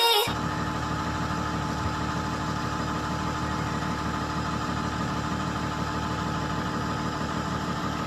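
An engine idling steadily, an even hum that neither rises nor falls, starting just as a burst of music cuts off.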